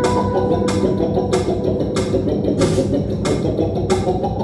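Electronic music played live from DJ mixers and controllers: a steady beat with a sharp percussive hit about every two-thirds of a second over a dense bass and mid-range texture.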